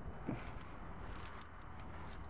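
Steady faint outdoor background noise with a low rumble and no distinct event.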